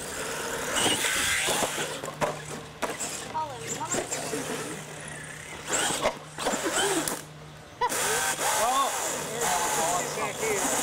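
A radio-controlled monster truck driving and jumping on a dirt track: its motor and tyres run in a busy, noisy stream, with sharp knocks from the truck hitting ramps and landing. A short lull comes about seven seconds in, then the noise returns loudly. Voices chatter in the background.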